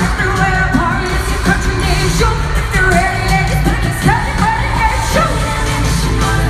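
Live pop music: female group vocals singing over a steady, heavy bass-driven backing, recorded from the audience in an arena.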